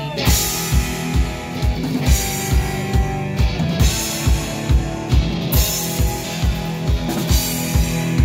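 Live rock band of two electric guitars and a drum kit, with no bass, playing an instrumental passage. The drums come in right at the start with a steady kick-drum beat of about two hits a second and cymbal crashes under the guitars.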